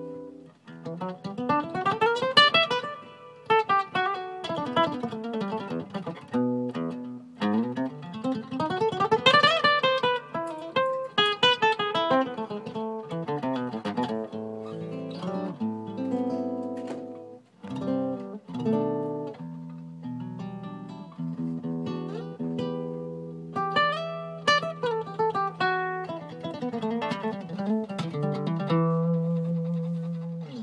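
Nylon-string classical guitar played solo: fast rising arpeggio runs and single-note lines, ending on held low notes.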